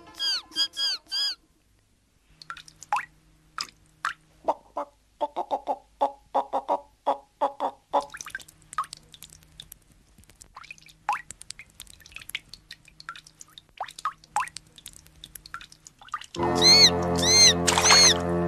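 Cartoon soundtrack: a few bird-like squawks at the start, then sparse short plucked and percussive notes with falling whistle-like glides. About a second and a half before the end, a louder passage of music with chirping squawks comes in.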